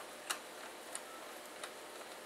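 A few faint, sharp clicks of a CPU cooler's mounting bracket and screws being handled and hand-tightened onto a motherboard, the clearest about a third of a second in.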